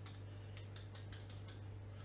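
A metal fork stabbing repeatedly into a raw potato to pierce its skin all over: a quick, irregular run of faint clicks and ticks.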